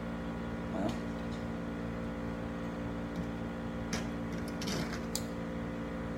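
Steady mechanical hum of a room humidifier, with a few faint clicks and taps from a baitcasting rod and reel being handled.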